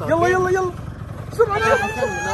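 Children's voices calling out twice, a short call at the start and another near the end, over a low steady hum.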